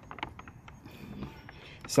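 A run of light, irregular clicks and ticks, mostly in the first second and fainter after, mechanical in kind.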